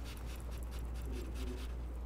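Shredded cheese being tipped from a glass bowl into a bowl of dip mixture: a soft, scratchy rustle over a steady low hum.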